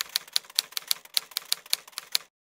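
Typewriter key strikes as a sound effect, a quick, slightly uneven run of clacks at about six a second, one for each letter typed onto a title card.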